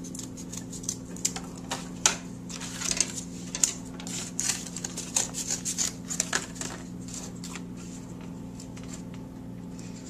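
Scissors cutting thick corrugated cardboard: a run of irregular snips and crunches that thins out in the last few seconds. A steady low hum lies beneath.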